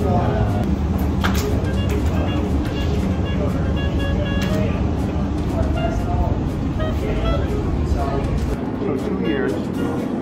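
Background music with short plucked-sounding notes over the hum and indistinct voices of a busy shop floor. The low hum drops away shortly before the end.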